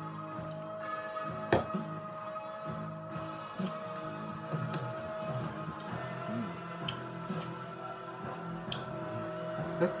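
Background music with steady sustained notes, and one sharp knock about one and a half seconds in, followed by a few fainter ticks.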